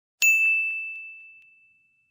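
A single bright bell ding, a notification-bell sound effect, struck about a quarter of a second in and ringing out over roughly a second and a half.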